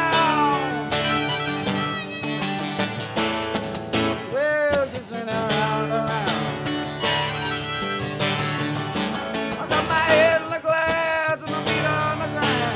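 Harmonica played in a neck rack over strummed acoustic guitar, an instrumental break with bent harmonica notes about four and a half seconds in.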